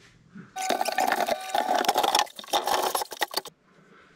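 Loud rattling, clinking and knocking with a squeal mixed in as a wooden cabinet is forced through a tight doorway. It lasts about three seconds and stops suddenly.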